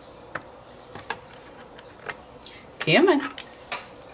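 Small wooden alphabet rubber stamps clicking and knocking against one another and the metal tin as letters are picked out, a scatter of light, separate clicks. A short bit of voice comes about three seconds in, louder than the clicks.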